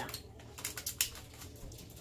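Thin hard ribbon candy crunched between the teeth close to the microphone: a quick run of small sharp cracks, the sharpest about a second in.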